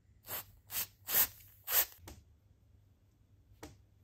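Aerosol freeze rust-loosener spray hissing in four short bursts in quick succession, with a shorter burst near the end; the spray freezes the rusted grinder parts to break the rust loose.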